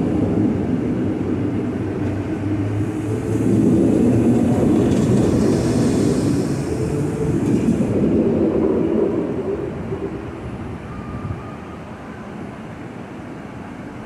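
NMBS/SNCB AM66 electric multiple unit pulling out and running past at low speed, with a steady rumble of motors and wheels on the rails. The sound drops away after about ten seconds as the last car leaves.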